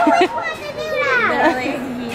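Laughter and indistinct high-pitched chatter, a child's voice among them.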